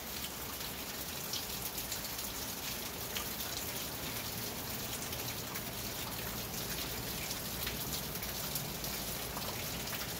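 Steady rain pattering on the roof of a covered riding arena: an even hiss sprinkled with many small, scattered drop ticks.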